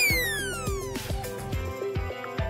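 A cartoon whistle sound effect falls steadily in pitch for about a second as the thrown paper airplane flies off. It plays over background music with a steady beat.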